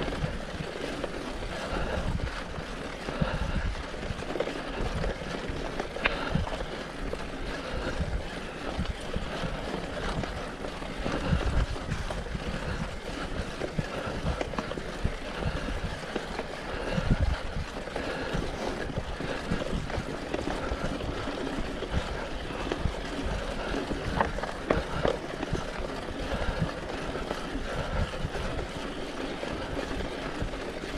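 Mountain bike riding over a rough dirt forest track, heard from a camera mounted on the bike: a continuous rumble of tyres on dirt with frequent knocks and rattles as the bike goes over bumps.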